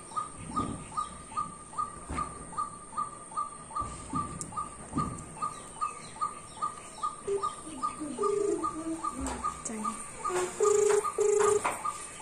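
A bird chirping over and over at an even pace, about three short, slightly falling chirps a second. From about seven seconds in, lower cooing notes join, two of them louder and held briefly near the end.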